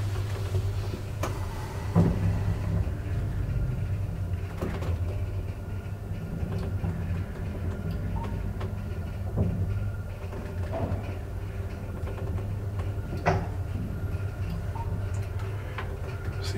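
Graham Brothers traction elevator car travelling, heard from inside the car: a steady low hum, with a few scattered knocks and clicks.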